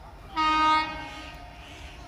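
Indian Railways WAG-9H electric locomotive's horn sounding one short blast, about half a second long, beginning a little under half a second in.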